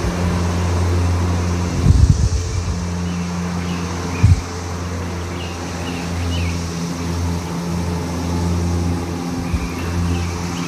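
A steady low mechanical hum, with two brief thumps about two and four seconds in and a few faint high chirps.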